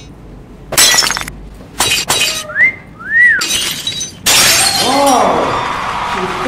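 Edited-in sound effects: several sharp crashes like breaking glass, two short whistles that rise and fall, then a loud hiss, with a voice exclaiming over the end.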